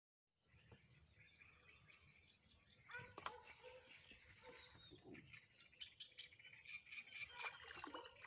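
Faint bird chirps and calls over a quiet background, a little louder from about three seconds in.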